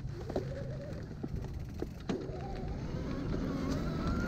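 Luna X2 electric mountain bike's motor whining under power, its pitch rising steadily through the second half as the bike speeds up, over a low rumble of tyres on dirt with a few sharp clicks and knocks from the trail.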